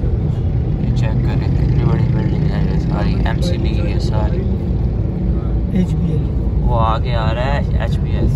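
Steady low rumble of a car's engine and tyres heard from inside the cabin while driving through city traffic, with brief voices in the background.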